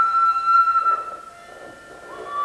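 A flute holding one long, steady note that fades out a little over a second in.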